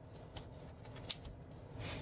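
Faint rustling and a few soft, scattered clicks over low background hiss.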